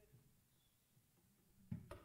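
Near silence in the hall, broken near the end by a short low thump followed at once by a sharp click.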